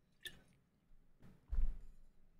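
A man drinking from a plastic sports bottle: soft gulping and swallowing sounds, then a dull low thump about one and a half seconds in.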